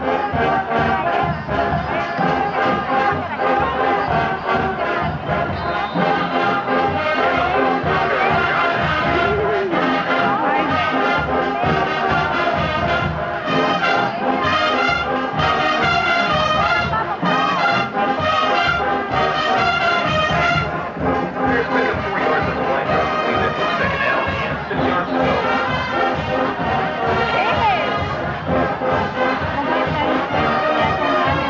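High school marching band playing loudly in the stands, with a brass section led by sousaphones and a driving rhythm underneath. The band comes in right at the start and plays without a break.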